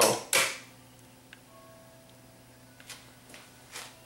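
Sansui SC3300 cassette deck's transport engaging with a clunk as its lead-in button is pressed, then running quietly with a few faint clicks as it winds the tape forward past the leader.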